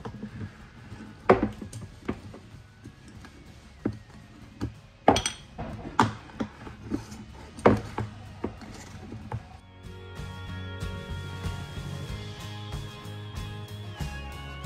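Metal canning lids and rings clinking against the rims of glass pint jars as they are set on, a string of sharp clinks over the first nine seconds or so. Then background music comes in and carries on.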